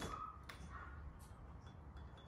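Front door latch clicking once as the door is opened.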